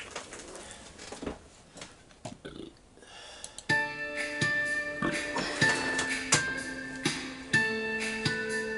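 A few faint clicks, then from about four seconds in, guitar music: plucked notes that ring on and overlap.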